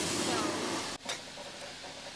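Touchless automatic car wash running, heard from inside the car: a loud, steady rushing hiss of its jets on the car that cuts off suddenly about a second in, leaving a quieter low background.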